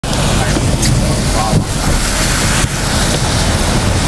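Strong wind buffeting the microphone in a loud, steady rush with a heavy low rumble.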